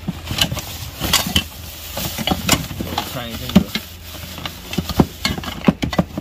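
Hands rummaging through a cardboard box of hardware and plastic-bagged parts: crinkling plastic and cardboard rustle with a string of short knocks and clatters as items are shifted. The sharpest knocks come about three and a half and five seconds in.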